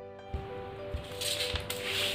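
Soft background music with held notes and a gentle beat. From about a second in, brown paper pattern sheets rustle as they are handled.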